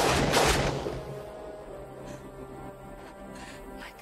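A rapid burst of gunfire, about three or four shots a second, that stops about a second in. Film score music then holds long sustained notes.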